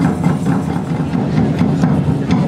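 Live hand drums beating a steady, quick rhythm, with a low continuous tone sounding underneath.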